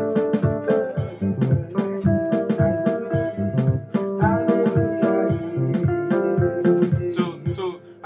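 Electronic keyboard playing a makossa groove with both hands: a quick, even run of bass notes under held and repeated chords.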